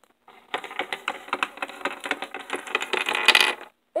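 Plastic Littlest Pet Shop figurines tapped and hopped along a wooden tabletop by hand, a rapid run of small clicks and clatters, growing louder near the end.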